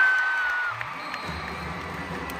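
Arena crowd cheering as a volleyball rally ends, with one high shrill note held for most of the first second, then stopping. The cheering then falls to a lower murmur.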